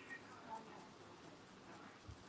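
Near silence: faint background hiss in a pause between speech, with one brief faint sound about a quarter of the way in.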